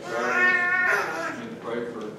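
A man's voice raised in a long, high, strained shout of just under a second, its pitch falling away at the end: a preacher's impassioned exclamation mid-sermon.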